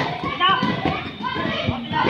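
Several children's voices shouting and calling out over one another, with some low thuds underneath.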